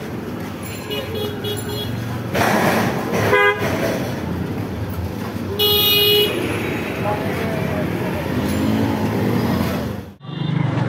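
Busy street noise with voices in the background and two short vehicle horn toots, the first about three and a half seconds in and a higher-pitched one about six seconds in.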